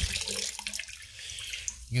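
Water pouring out of an upturned PVC pipe pump housing and splashing into a bucket of water, strongest at first and thinning out after about a second. It is the water that the pump's bottom check valve had held in the housing.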